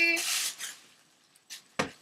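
A girl's voice ends on a high held tone and trails into a breath, then falls quiet apart from a few short clicks about a second and a half in.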